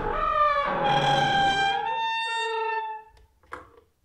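Intro theme music: a few held notes with rich overtones that stop about three seconds in, followed by a brief short sound and then silence.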